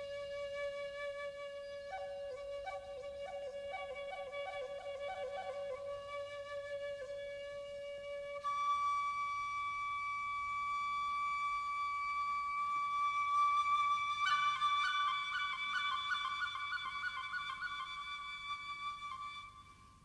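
Solo flute music with long held notes broken by quick wavering ornaments. It steps up in pitch about eight seconds in and again about two-thirds of the way through, then fades out near the end.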